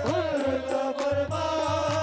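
Qawwali music: a voice singing an ornamented, wavering melody over held instrumental tones, with a steady drum beat throughout.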